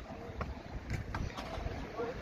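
Low wind rumble buffeting the microphone, with a few faint clicks.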